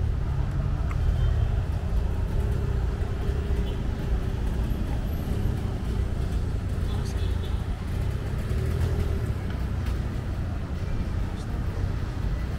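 Steady road-traffic noise: a continuous low rumble of cars passing on the road, with indistinct voices of people nearby.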